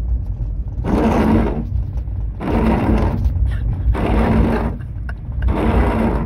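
Skoda Fabia's rear-window washer pump whirring in four short bursts of about a second each as it squirts fluid backwards. The car's engine and road noise run low underneath.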